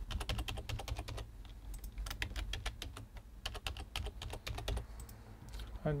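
Typing on a computer keyboard: quick runs of keystrokes with brief pauses between them.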